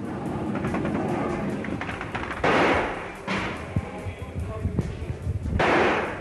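Battle sounds: a dense rumble with many thuds and two loud rushing blasts, about two and a half and five and a half seconds in, with music underneath.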